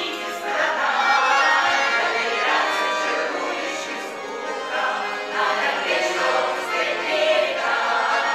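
Russian folk choir of women's voices singing in harmony, with accordion accompaniment.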